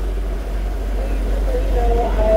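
A small passenger boat's engine running with a steady low rumble while under way. Faint voices come in near the end.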